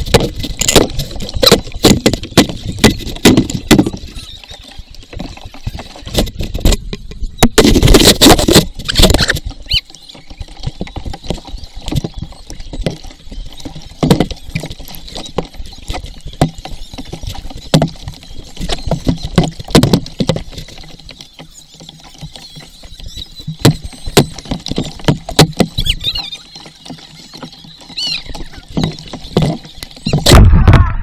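Wooden paddle strokes and water splashing and slapping against a small paddled boat, heard close up at water level, with many sharp knocks and taps. A loud burst of noise comes about eight seconds in.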